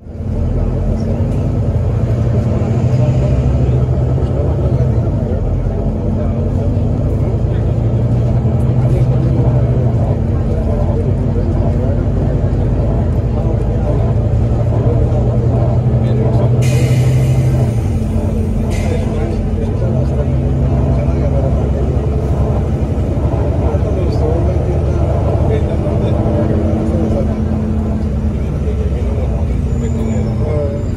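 Volvo B9TL double-decker bus's diesel engine and Voith automatic gearbox heard from inside on the upper deck while driving, the engine drone pulling in long stretches and easing off between them. A burst of compressed-air hiss lasts about two seconds just past the middle.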